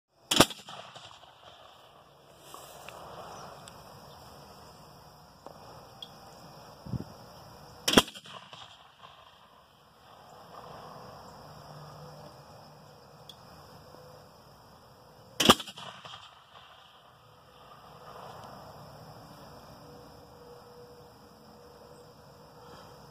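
M8 Multibang propane bird-scare cannon firing three single loud bangs, about seven and a half seconds apart, each followed by a brief echo.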